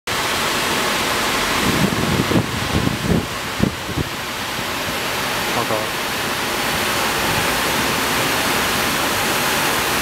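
A steady, loud rushing noise with no clear pitch, with a cluster of short low voice sounds between about two and four seconds in and a brief exclamation of "Oh my god" a little after five seconds.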